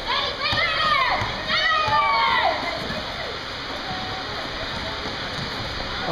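Several voices shouting and calling out in the first two and a half seconds, then a steady haze of indoor basketball-court background noise.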